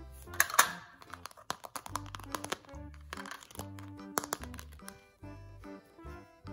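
Background music with a steady bass line over sharp clicks and taps of plastic toy pieces being handled, the loudest clicks about half a second in.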